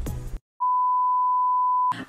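Background music cuts off, then a single steady electronic beep, one pure tone held for just over a second.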